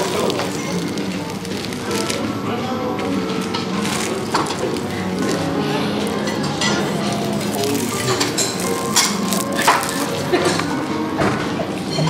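Crisp, freshly baked flaky pastry of an apple pie crackling and crunching in irregular snaps as chopsticks pull it apart on a plate. Background music plays underneath.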